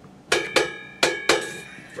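A hand-held cymbal struck four times with a drumstick, in two quick pairs, each hit ringing on.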